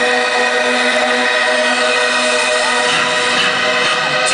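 A sustained electronic drone of several steady held tones over the noise of an arena crowd, as a concert song's intro.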